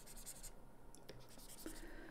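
Faint scratching and light taps of a stylus on a tablet screen, highlighting terms on a slide.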